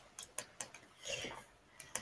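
A few faint, sharp clicks scattered through the moment, with a short soft murmur about a second in.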